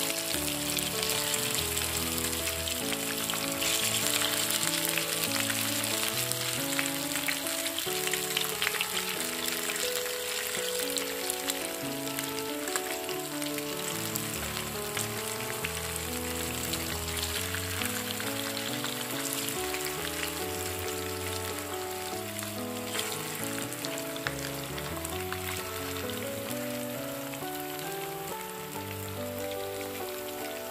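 Spice-coated river fish pieces frying in hot oil in a pan, sizzling steadily with frequent small crackles. Background music with sustained notes plays throughout.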